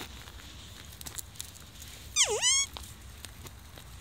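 A dog gives one short whine about two seconds in, its pitch dipping and then rising again. Faint crunching footsteps on dry ground are heard around it.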